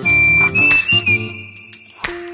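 Background music: a high whistled melody holding a note and stepping up slightly over a lower accompaniment, fading out after about a second.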